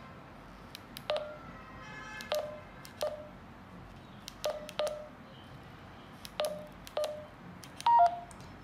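Keypad beeps of a Retevis RT3S handheld radio as a frequency is keyed in digit by digit: about seven short beeps, each with a key click, at uneven intervals. A louder falling two-note beep comes at the very end, on the last key press.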